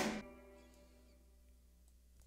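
The last notes of a guitar-and-bass track played back from a DAW die away within a fraction of a second after playback stops, leaving near silence with a faint low hum.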